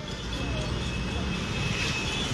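An engine rumbling steadily, growing slightly louder, with a faint higher whine above it.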